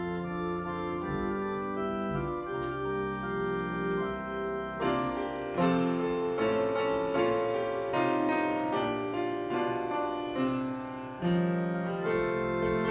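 A church prelude played on piano: slow chords with held notes, the playing growing busier and a little louder from about five seconds in.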